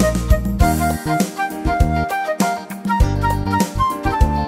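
Yamaha DGX-670 arranger keyboard playing a groovy pop soul style: a drum beat and bass line from the built-in accompaniment, with a melody played over them on the keys.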